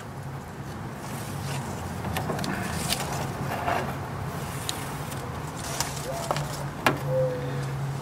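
Paper backing being peeled off foam gasket tape and the tape pressed onto the aluminium trailer skin: crinkling and light clicks, over a steady low hum.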